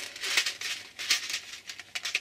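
A small clear plastic compartment box of metal eyelets being handled and pried open: a run of short plastic clicks and rustles, with the eyelets shifting inside.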